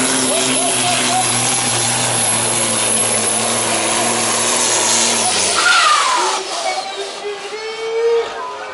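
Volvo FH pulling truck's diesel engine running flat out under heavy load as it drags a weight-transfer sled. About five seconds in the engine drops off as the pull ends, with a falling whine and a short burst of air hiss.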